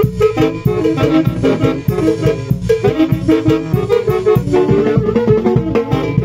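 A live band playing loud dance music, with a steady beat under a busy melody.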